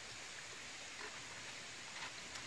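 Faint, steady rush of flowing water from a creek, with no clear sound standing out.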